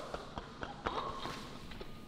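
Faint, scattered light taps and clicks, a few short sharp ticks spread across about two seconds, in a large echoing room.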